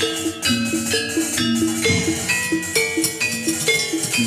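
Javanese gamelan accompanying a jathilan dance: bronze gong-chimes and metallophones strike ringing notes in a quick, repeating melodic pattern.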